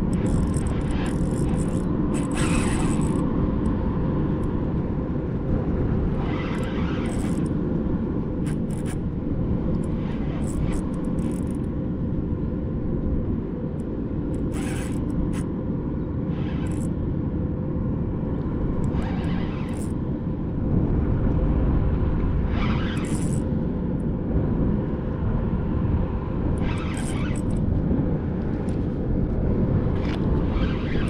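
Outdoor waterside ambience: a steady low rumble with a faint hum. A short rush of noise rises over it every few seconds.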